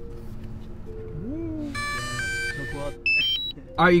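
Background music: a steady low synth pad with a rising glide, then a short run of bright electronic notes and a few high beeps near the end.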